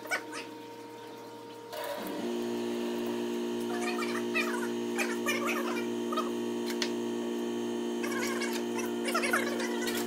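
Background music of sustained tones over a steady pulse about twice a second, switching to a new set of tones with a short glide about two seconds in. Scattered short clicks and clinks of hands and tools working on a motocross shock absorber in a shock clamp sound through it from about four seconds in.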